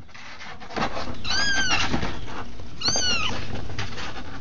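A kitten meowing twice, each a high call that rises and falls, the second shorter, over steady background noise.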